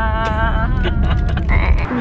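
A person's voice holding a long, slightly wavering note over the low rumble of a moving car. The voice breaks off about a third of the way in, and the car rumble cuts off suddenly near the end.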